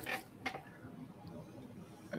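Faint handling noise of car-audio speaker parts on a table: a few small sharp clicks near the start and about half a second in, then light rustling over quiet room tone.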